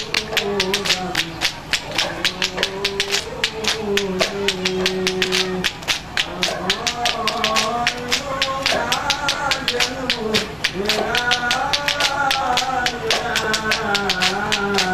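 Sholawat Nabi, Islamic devotional singing, with voices holding long, wavering notes over hand drums struck in a fast, even beat of about five strokes a second.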